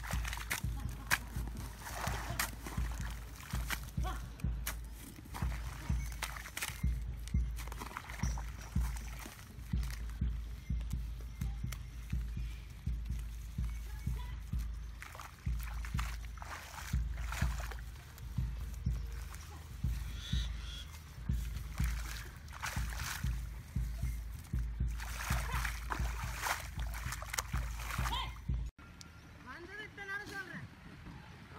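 Wet paddy-field mud being scooped and slapped by hand onto an earthen bund, with irregular sloshing splashes of mud and water about once a second. The sound drops away suddenly near the end.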